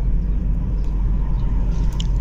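Steady low rumble inside a car's cabin while it is being driven slowly: engine and road noise.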